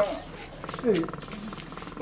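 Short snatches of a person's voice, with a faint, fast, even buzz under them in the second half.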